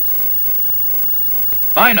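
Steady hiss of an old film soundtrack, with no other sound in it; a man's narrating voice comes in near the end.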